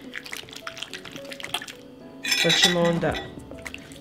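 Faint wet squelching of hands rubbing an oily vinegar marinade into raw pork knuckle, under soft background music. A voice speaks briefly a little past halfway.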